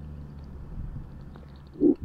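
A pause in a man's voiceover narration: a steady low hum and faint background noise under the voice track. Just before the end comes a short voiced sound from the narrator as he starts to speak again.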